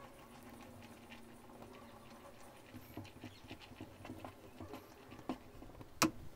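Faint, irregular soft taps and scrapes of utensils stirring powdered coconut milk and water in a nonstick saucepan, the ticks coming more often in the second half.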